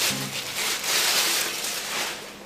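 Clear plastic packaging rustling and crinkling as it is handled and pulled off a new oven's baking tray.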